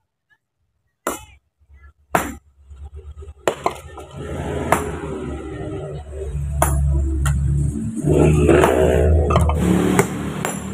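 Sledgehammer blows on stone: sharp ringing strikes about a second apart, the first two in near silence. From about three and a half seconds in, music with a steady low beat and a voice plays over further strikes.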